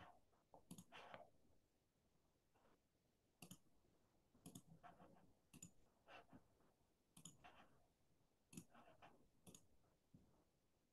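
Faint, irregular computer mouse clicks, about seven in all, a second or so apart.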